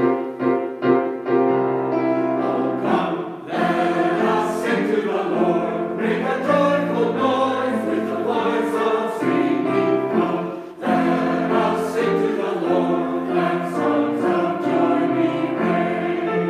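Small mixed-voice church choir singing an anthem with piano accompaniment, the phrases briefly breaking about three seconds and again about eleven seconds in.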